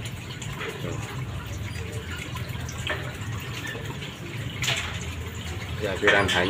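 Aquarium top filter returning water into the tank, a steady splashing flow with a low hum beneath, with a short loud burst of noise about five seconds in.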